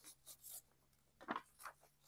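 Mostly quiet, with a few faint rustles and one or two soft ticks from paper sewing-pattern pieces being handled. The clearest comes a little past halfway.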